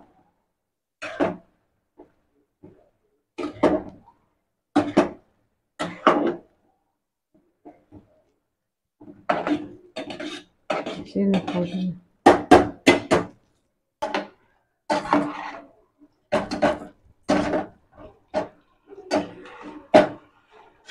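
A metal spoon scraping and knocking inside a metal cooking pot as thick cooked rice is stirred. It comes in short separate strokes with gaps between, sparse at first and busier from about halfway through.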